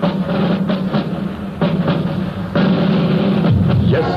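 Instrumental break of a 1960s recorded rugby song: a band playing with drums, no singing.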